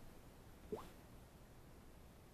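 Near silence, broken once about three-quarters of a second in by a short blip that rises quickly in pitch.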